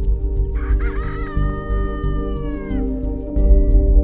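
A rooster crows once, a call of about two seconds that wavers at the start, holds steady and drops in pitch at the end, over background music.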